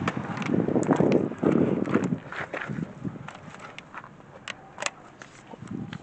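Footsteps on gravel for about two and a half seconds, then quieter, with a few scattered light clicks and knocks.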